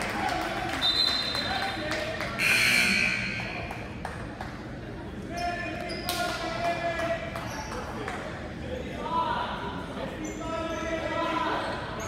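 Basketball being dribbled on a hardwood gym court during live play, amid players' and spectators' voices echoing in the large gym.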